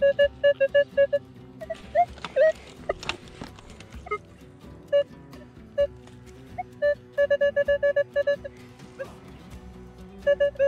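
Metal detector, likely a Minelab Equinox 800, giving short, quick beeps as the coil is swept over the soil. A run of about five beeps a second comes at the start, then scattered single beeps, then another quick run near the end.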